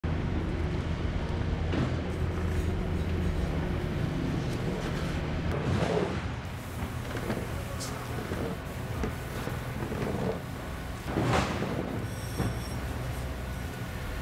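Steady low drone of a motor running, with occasional scrapes and knocks as mud-caked metal tables are moved and the pavement is swept or shovelled clear of mud; the loudest scrape comes about eleven seconds in.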